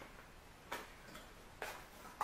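A few faint clicks and light taps of a small cardboard cosmetics box being opened by hand to take out a compact powder case.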